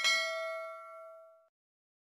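Notification-bell sound effect of a subscribe-button animation: one bright bell ding with several pitches ringing together. It fades away within about a second and a half.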